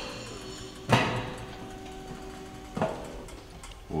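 Stainless-steel roll-top chafing dish lid clanking as it is swung open, a sharp metal knock about a second in that rings on for a couple of seconds, then a lighter metal clack near three seconds.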